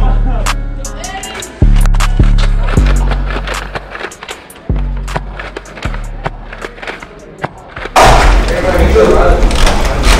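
Hip hop beat with deep 808 bass hits that fade slowly and crisp hi-hat ticks, with no rapping in this stretch. About eight seconds in, the music cuts off and gives way to loud live sound from a large hall, a dense din with scattered knocks.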